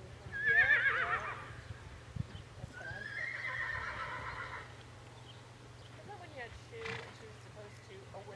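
A horse whinnying twice: a loud, quavering call about a second long near the start, then a quieter, longer one a couple of seconds later.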